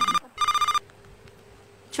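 Mobile phone ringtone: two short electronic beeps, each a steady pitched tone, that cut off under a second in.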